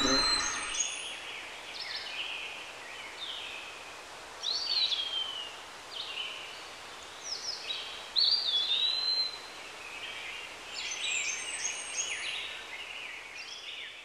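Wild songbirds calling, probably laid over the picture as forest ambience. Several short slurred whistles that rise then fall sit in the middle, with clusters of high chirps near the start and near the end, over a faint steady hiss.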